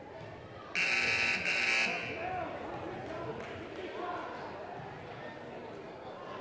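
Gymnasium scoreboard buzzer sounding once for about a second, harsh and loud, over the steady murmur of voices in the gym.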